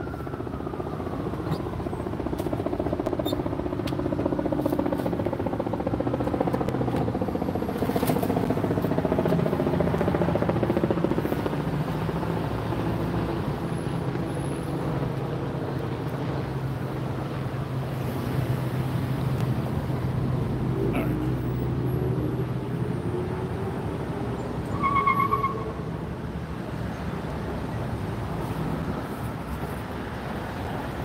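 Motor vehicles passing on a road, their engine noise sliding in pitch as they go by, over a steady low hum. A short beep sounds near the end.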